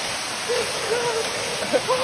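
Steady rush of a waterfall pouring into a rock pool, with short, indistinct voices rising over it.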